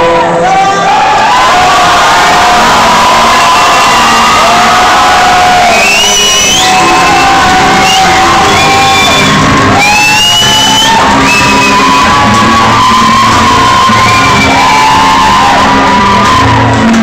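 Live solo performance of a male singer with acoustic guitar through a PA in a large hall, with audience shouts and whoops rising above the music about six and ten seconds in.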